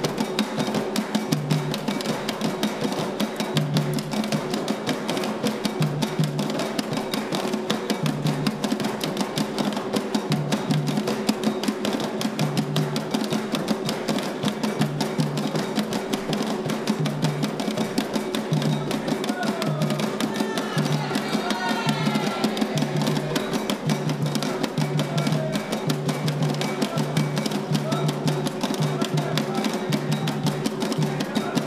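Atabaque drums struck with thin sticks in a fast, continuous rhythm, the low drum tones ringing steadily under the rapid strokes.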